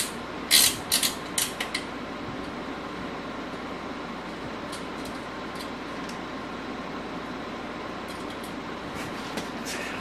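A quick run of sharp metallic clicks in the first two seconds as bolts are worked loose on a motorcycle's front fender, then only a few faint ticks over a steady background hum.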